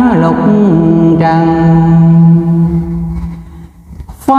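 A man's voice chanting Buddhist scripture verses in a drawn-out melodic style. The pitch glides down into one long held low note, which fades away in the last second or so.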